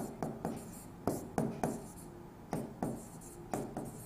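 Hand writing on a board, a run of short strokes, several a second, with a brief pause about halfway.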